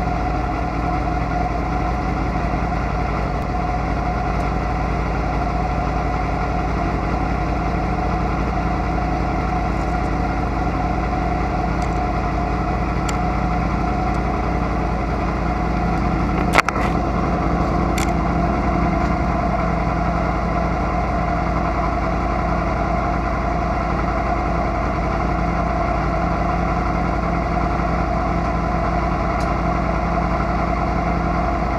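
Sport motorcycle engine idling steadily while warming up. A single sharp click sounds about halfway through.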